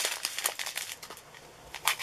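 Plastic crinkling with small clicks as a zip bag of diamond-painting drills is handled, busy for about the first second and then thinning out.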